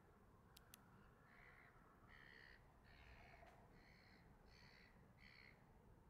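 Faint, distant bird calls: about six short caw-like calls in a row, starting about a second in, over near silence.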